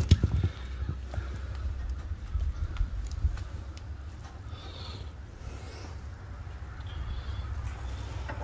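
A few light metal clicks and knocks as a steel 3-point hitch part is rocked and worked into place by hand, mostly in the first half-second, then fainter scattered ticks over a low steady rumble.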